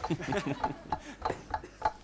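A quick run of sharp clicks or clinks, about three or four a second, with a low voice murmuring near the start.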